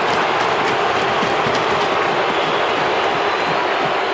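Hockey arena crowd cheering loudly and steadily after a goalie's save on the goal line.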